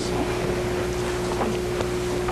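A steady mid-pitched tone over an even hiss from the council chamber's microphone and sound system, starting just as the talk stops.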